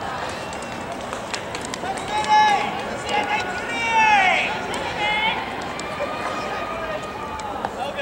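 Baseball players' voices calling out across the field: several drawn-out shouts with rising and falling pitch, the loudest about four seconds in, over a general hubbub with a few sharp clicks.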